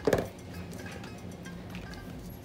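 Quiet background music, with a brief clatter of small craft items being handled on a tabletop just after the start.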